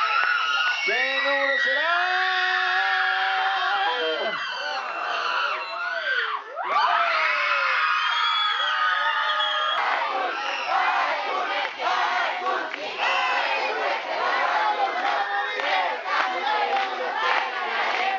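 A crowd of young people shouting and cheering, with long drawn-out yells in the first half. From about ten seconds in, the shouting goes on with many hands clapping.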